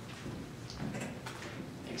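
Faint room tone with a few soft clicks and knocks from a handheld microphone being passed from one person to another, before a man says "thanks" at the very end.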